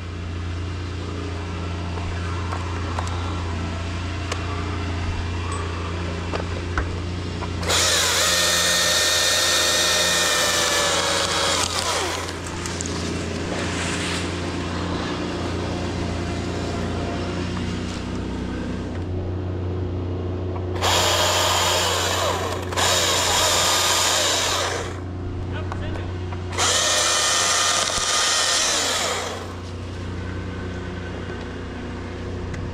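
Husqvarna T542i battery top-handle chainsaw cutting in bursts: one run of about four seconds, then three shorter runs close together in the second half. Its electric motor whine slides down in pitch as each cut ends. A steady low hum runs underneath.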